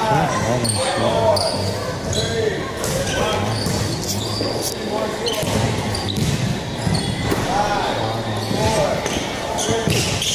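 Basketball bouncing on a hardwood gym floor, with indistinct voices echoing around the large hall.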